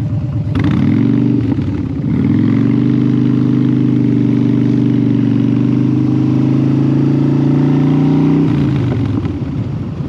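Motorcycle engine pulling away from a stop. It revs up about half a second in, dips briefly near two seconds, holds a steady cruise, then eases off near the end.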